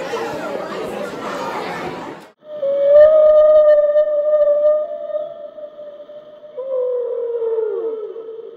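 Chatter that cuts off abruptly about two seconds in, then a loud, long held tone with a slight waver, followed by a lower tone that slides down near the end: an edited-in sound effect covering swearing.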